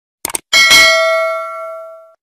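Subscribe-button animation sound effect: a quick double mouse click, then a single bell ding that rings on and fades away over about a second and a half.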